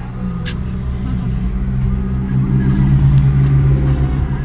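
Car engine and road noise heard from inside the cabin, a steady low hum that grows louder from about two seconds in as the car gathers speed. A single short click sounds about half a second in.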